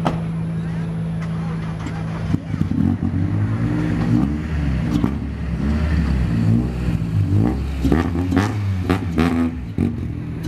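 BMW E30 rally car's engine idling steadily, then revving up and down repeatedly from about two seconds in as the car pulls away down the podium ramp.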